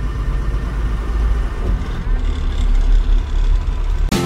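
Truck's diesel engine running slowly, heard from inside the cab as a steady low rumble while it waits in a toll-plaza queue.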